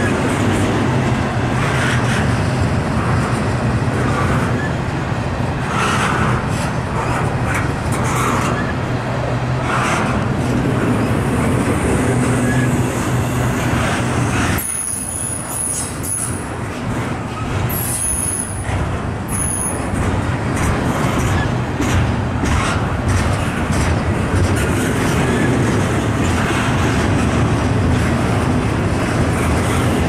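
Double-stack container well cars of a freight train rolling steadily past: a continuous heavy rumble of steel wheels on the rails, with scattered clicks and clanks.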